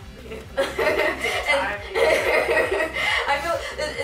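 Young women laughing and chuckling together while they talk.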